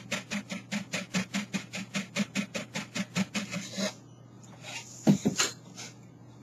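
Mesh strainer full of wheatgrass pulp jiggled on the rim of a pitcher to shake the juice through, rattling in a fast, even run of taps about six a second that stops about four seconds in. A few louder knocks follow near the end as it is lifted away.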